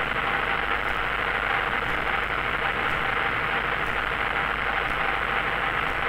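Steady engine and propeller noise of a single-engine light aircraft on final approach, heard in the cockpit as an even drone with no change in power.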